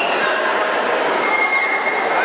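Spectators in a sports hall making a loud, steady din of many voices, with a few long high-pitched tones over it.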